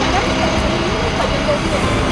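City street noise, mainly steady traffic, with faint voices mixed in.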